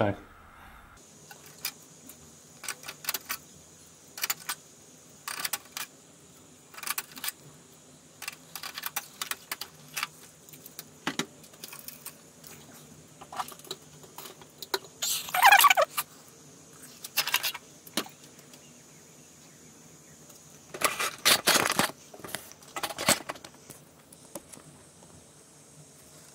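Intermittent clicks, taps and metallic rattles from handling the metal chassis and parts of a Dell PowerEdge R710 rack server, with two louder clattering bursts, one about two-thirds of the way in and another near the end.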